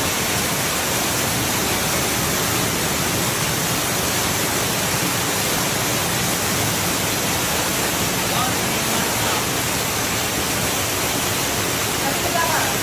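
Waterfall: water pouring over rocks into a shallow pool, a steady, even rush of white water.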